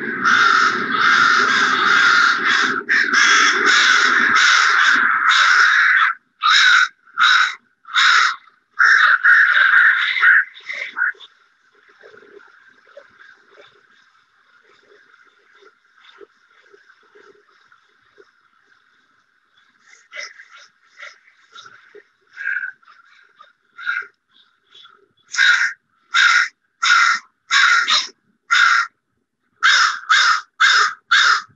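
A large winter roost of American crows (the West Coast birds formerly called Northwestern crows) cawing. Many birds call at once, overlapping densely, for the first ten seconds or so. After a quieter stretch, single loud caws come in quick succession near the end.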